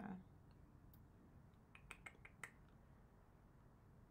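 Near-silent room tone with a handful of faint, sharp clicks, several of them in quick succession about two seconds in.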